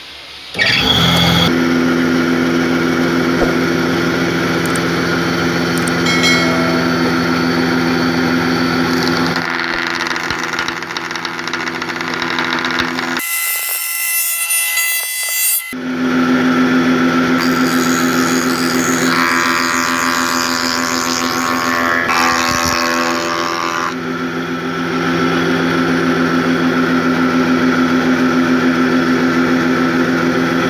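A spindle moulder (wood shaper) runs with a loud steady hum while a wooden coat hanger blank is fed against its cutter to shape the edge. Near the middle the hum drops out for about two seconds and a higher whine is heard, then the machine sound returns.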